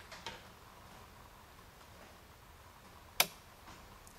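Output relay of a Johnson Controls A419 temperature controller clicking once, sharply, about three seconds in, as the controller cuts in with the probe temperature at 83°F. A fainter tick comes just after the start, over quiet room tone.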